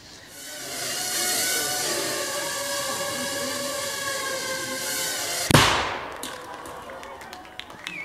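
Film soundtrack played over a hall's loudspeakers: a palm-sized quadcopter drone whirring, several steady tones growing louder as it flies in. About five and a half seconds in, one sharp bang from its small shaped explosive charge, then a fading tail.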